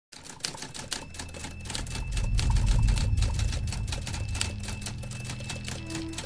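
Typewriter sound effect: rapid, irregular key clicks, several a second, over a low rumbling drone that swells through the middle. A held musical note comes in near the end.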